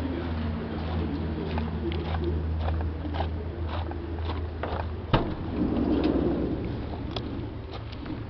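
Footsteps on gravel about twice a second, then a sharp click of the van's sliding side-door latch about five seconds in, followed by the door rolling open. A steady low hum runs underneath.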